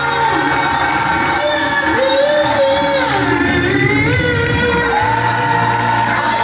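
A choir singing live with a solo voice over it through the hall's sound system, the choir holding long notes while the solo line glides up and down.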